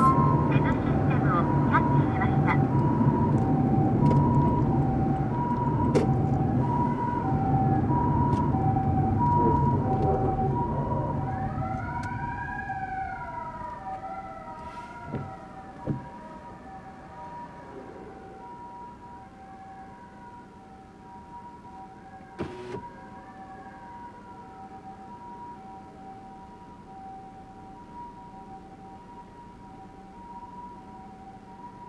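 Japanese ambulance siren: the electronic two-tone alternating steadily between a high and a low note (pi-po), with several short rising-and-falling wails from its foot-pedal siren about twelve to twenty seconds in. The low road and engine rumble of the following car fades away over the first quarter-minute as it comes to a stop.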